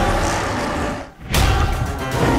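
Loud action-scene soundtrack: dramatic music with a large creature's roar sound effect. The sound drops away briefly about a second in, then comes back with a sudden loud hit.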